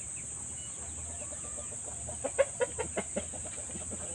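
Rooster clucking: a quick run of about six short clucks a little over two seconds in, over a steady high-pitched buzz.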